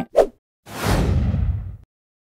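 An edited-in whoosh sound effect, about a second long, whose high end falls away as it fades. It leads into a title-card transition.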